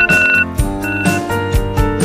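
A digital alarm clock's electronic alarm beeping, two high beeps, over background music with a steady drum beat.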